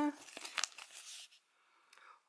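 A paper label band around a ball of yarn rustles and crinkles as it is handled and turned over, for about a second and a half, then goes quiet.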